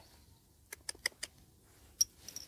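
A quick run of about five light clicks about a second in, a small dog's claws on concrete as it steps toward the target coin.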